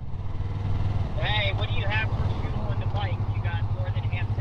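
Yamaha MT-03's parallel-twin engine running at low, steady revs as the motorcycle rolls slowly in traffic.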